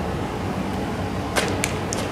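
Several sharp cracks in quick succession, starting a little past halfway and the first the loudest, over a steady low hum and noise.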